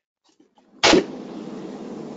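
Silence, then a sudden pop about a second in as a conference line's microphone opens, followed by the steady hiss of the open line.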